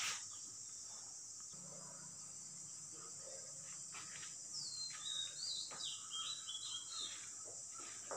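Faint background ambience: a steady high-pitched insect-like drone, with a run of short, falling bird chirps a little past the middle, and a low hum underneath.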